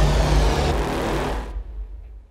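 The decaying tail of an outro music sting: a deep low rumble under a hissy wash that fades out over about a second and a half.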